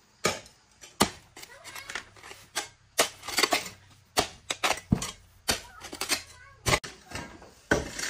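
A hoe chopping into stony soil to dig a drainage trench: irregular sharp strikes, two or three a second, some trailing into a short scrape as the blade drags dirt and grit.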